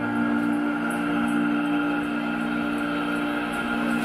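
Live concert music: a steady, sustained chord of held tones with no singing.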